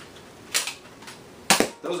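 Plastic handling sounds as foam darts are pushed into the dart-holding posts on top of a Nerf Doomlands Holdout pistol: a short scrape about half a second in, then a sharp plastic click about a second and a half in.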